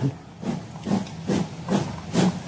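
Steam locomotive chuffing at a slow, even pace, about two to three exhaust beats a second with a hiss of steam.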